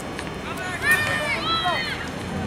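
Spectators shouting and cheering in high voices as a ball is put in play, loudest about a second in.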